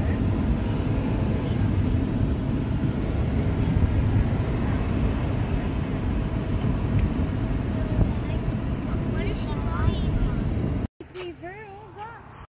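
Steady low road and engine rumble inside a moving car's cabin, cutting off suddenly near the end.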